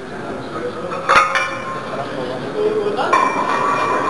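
Iron weight plates clinking as one is picked up and slid onto a barbell sleeve: two metal clanks, about a second in and about three seconds in, each leaving a short ringing tone.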